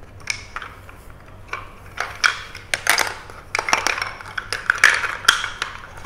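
Wooden spindles clattering as they are lifted out of a wooden spindle box and dropped into a plastic basket: a run of irregular wooden clicks and knocks, busiest in the second half.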